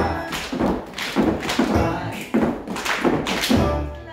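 Recorded music playing, with a group of dancers' shoes striking a hard studio floor together in time with it, about two and a half thumps a second.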